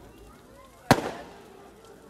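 A single sharp firecracker bang about a second in, dying away quickly, with faint voices around it.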